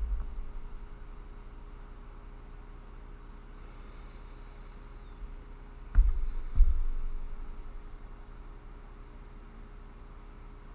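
Steady low electrical hum, broken by dull low thumps: one right at the start and two louder ones about six seconds in, half a second apart. A faint wavering high whistle comes and goes about four seconds in.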